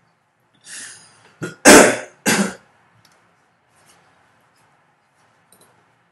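A person coughing and clearing their throat: a breath, then three short coughs, the middle one the loudest.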